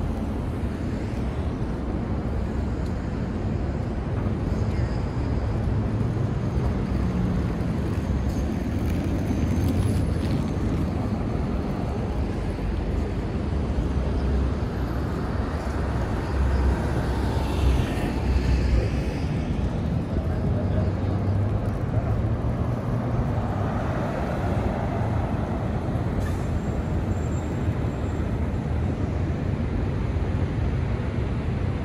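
Downtown street ambience: a steady rumble of road traffic, with a vehicle passing somewhat louder just past the middle.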